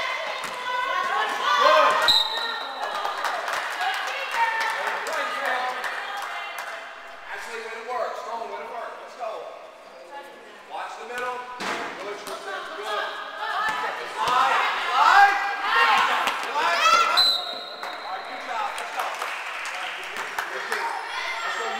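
Basketball game in a gym hall: a ball bouncing on the court floor amid shouting voices of players and spectators. A short, high referee's whistle blast sounds about two seconds in and again near the end.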